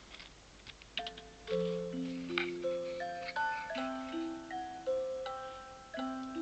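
Music played back through a single-transistor (BC547) active L-C audio filter, heard at the filter's output. After a few faint ticks, a slow melody begins about a second in: notes start sharply and are held, overlapping as they step up and down.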